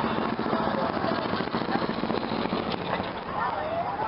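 Small custom motorcycle's engine running at low revs as it rolls slowly past, a steady low hum that weakens about two seconds in, under the chatter of a crowd.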